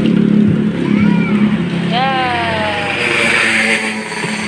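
Tap water running and splashing onto a plastic crate of toys, over a steady low motor hum, with a brief child's voice.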